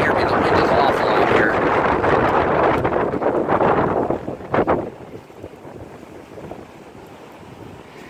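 Wind buffeting the microphone, a loud rushing noise that drops away about five seconds in, leaving a quiet hiss.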